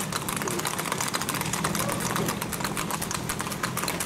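Hooves of gaited horses singlefooting on a paved road: a fast, even clatter of hoofbeats over a steady low engine hum.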